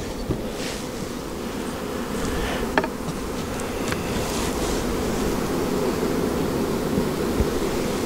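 Honeybee colony buzzing steadily in an opened hive, the hum of a calm colony, growing a little louder over the first few seconds as the cover comes off and the frames are exposed. A short sharp click about three seconds in.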